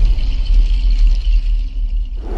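Cinematic logo-intro sting: a loud, deep bass rumble with a faint high shimmer above it, thinning out near the end.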